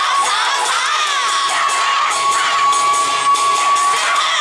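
Many voices shouting and cheering together at the close of a yosakoi dance, with the music's last note held as a single steady tone underneath until it stops at the end.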